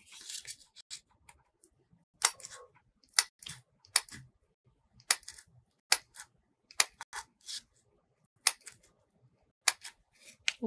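Hand-held single-hole punch pliers snapping shut through a glitter sheet, about eight sharp clicks roughly a second apart, each one punching out a small dot.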